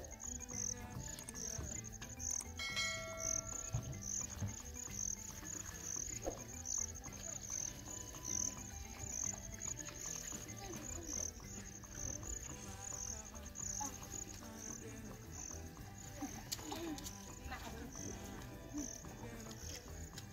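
Insects chirping in a steady, high-pitched rhythmic pulse, roughly one to two chirps a second.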